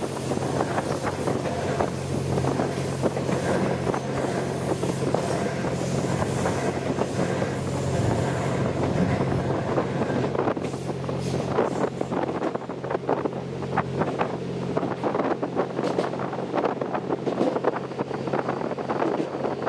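Wind buffeting the microphone on the open-air observation deck of the moving Twilight Express Mizukaze, over the train's steady low hum and running noise. Irregular clicks and knocks from the wheels and track grow more frequent in the second half.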